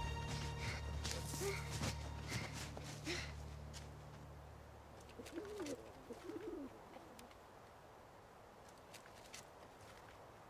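A low music drone fades out over the first few seconds. Then a bird calls in two short, low phrases about five and six seconds in, with faint scattered clicks.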